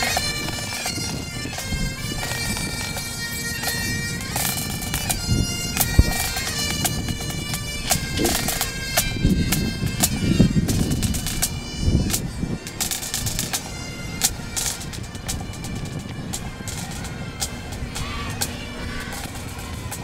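Highland pipe and drum band playing: Great Highland bagpipes carry a tune over a steady drone, with drum strokes beating under it, busiest in the middle stretch.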